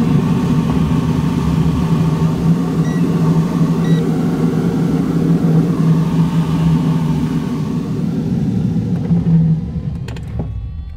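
Loud rushing of airflow around a glider's cockpit canopy at high speed through a loop, with a steady low hum under it. Two short high beeps sound about a second apart, three seconds in, and the rush eases off near the end as the glider slows over the top.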